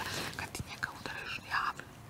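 Two women whispering to each other, quietly.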